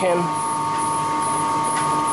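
Water turbine and generator of a micro hydro plant running: a steady machine hum with a constant whine.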